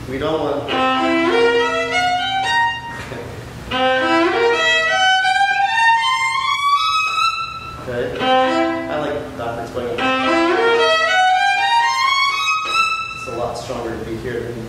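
A solo viola playing quick rising runs of notes that climb high. The same phrase is played twice over.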